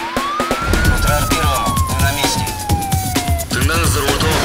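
A TV news show's theme sting: one siren wail that rises quickly and then falls slowly, over music with a steady thumping beat.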